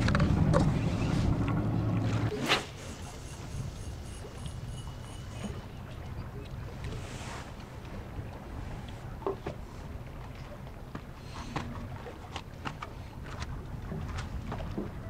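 Low, steady rumble of wind on the microphone at the seaside. It is loud for the first two seconds, then drops suddenly after a sharp click to a softer hiss with a few faint clicks.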